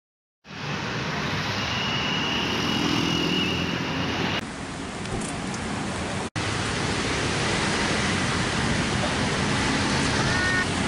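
Steady road traffic noise, a continuous hiss and rumble from passing vehicles. The sound changes abruptly about four seconds in and breaks off for an instant around six seconds before carrying on the same.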